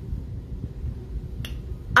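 A low, steady background rumble with one sharp click about one and a half seconds in.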